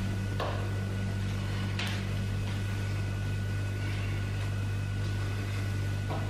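Steady low hum with a faint steady high tone above it, and two soft clicks, the first about half a second in and the second just before two seconds.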